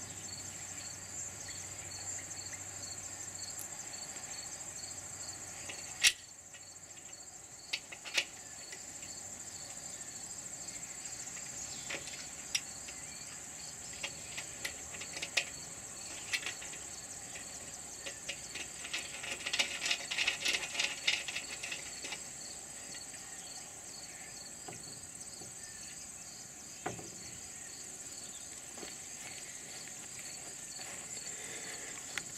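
Small metal clicks and clinks of brackets, bolts and nuts being fitted by hand to a solar panel's aluminium frame, with the sharpest click about six seconds in and a quick run of rattling clicks around twenty seconds in. Under it, insects trill steadily with a faint regular chirp about twice a second.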